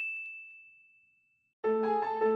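A single bright chime 'ding' from a brand sound logo, ringing out and fading away over about a second and a half. Soft music begins near the end.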